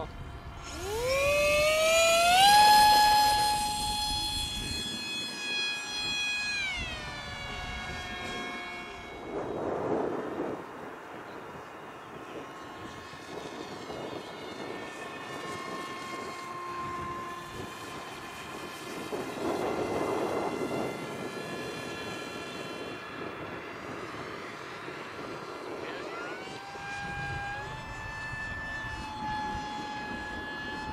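Radio-controlled model biplane flying: the high whine of its motor and propeller climbs sharply in pitch about a second in, holds steady, then drops a few seconds later. It carries on more faintly through two further passes and rises again near the end.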